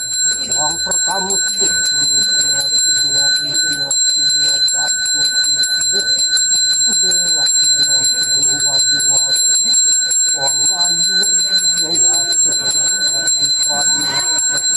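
A Balinese priest's hand bell (genta) rung without pause, its high ringing tones held steady, over a man's voice.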